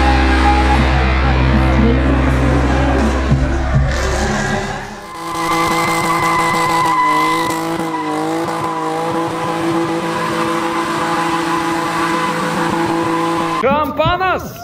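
Music until about five seconds in, then a drift car's engine held at high revs, its pitch wavering up and down, with tyres squealing as the car slides sideways.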